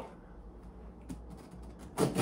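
Faint, scattered clicks and rustles of scissors and a cardboard shipping box being handled, over a low steady room hum.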